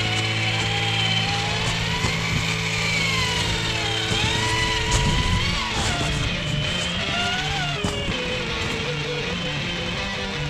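Background rock music with held chords. Under it, the whine of a radio-controlled scale 4x4 truck's electric motor and gears, rising and falling in pitch as the throttle changes.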